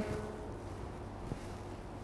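Quiet room tone: a faint steady hum and hiss, with one small tick just past the middle.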